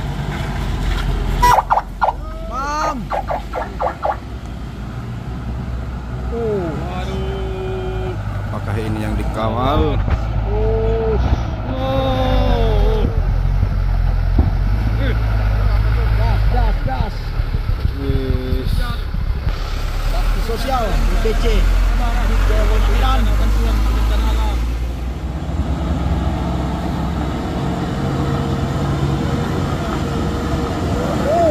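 Diesel truck engines running under load on a steep dirt climb, a steady low rumble that grows heavier midway through. People's voices call out over it, and there is a short clatter about two seconds in.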